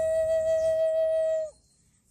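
Native American-style flute holding one long steady note that stops about one and a half seconds in, followed by near silence.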